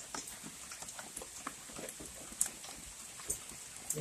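Rain dripping: scattered small drops ticking irregularly, a few a second, over a faint hiss.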